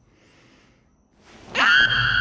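A girl's scream: a quick rush of breath, then about one and a half seconds in her voice shoots up in pitch and holds one loud, high, steady note.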